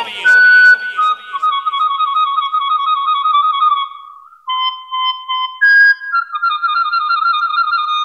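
Bird-like whistled trills playing over a large sound system as a cumbia recording opens. A loud held note comes first, then warbling trills, then a run of short chirping notes about halfway through, and more trills to close.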